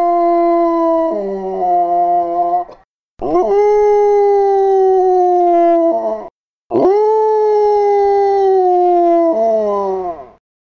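A recorded dog howl sound effect played back three times in a row, each long howl lasting about three seconds with short silent gaps. The first howl holds one pitch and drops about a second in; the second and third rise quickly at the start and then slowly fall.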